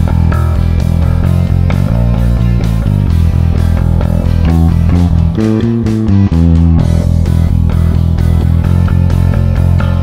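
Electric bass guitar played fingerstyle: a dark-sounding riff built on the flat second and flat five intervals, its low notes changing in a steady rhythm.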